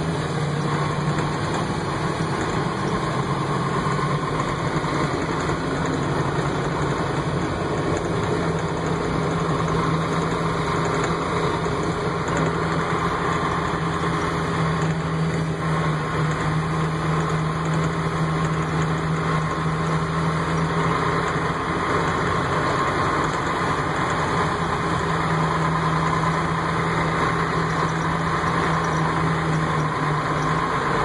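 John Deere tractor's diesel engine running steadily as the tractor drives along, heard from inside the cab.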